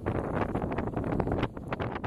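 Strong wind buffeting the microphone of a camera on a moving bicycle: a loud, rumbling rush broken by irregular gusts.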